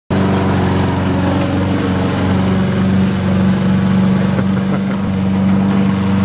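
Honda walk-behind lawn mower's single-cylinder four-stroke engine running at a steady speed while mowing grass.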